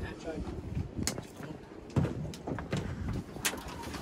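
Faint, low talk over a steady low rumble of a boat on open water, with a few short sharp knocks.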